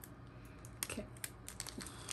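Light, irregular clicking and crinkling as a chain bracelet in a small plastic jewellery bag is handled and unwrapped.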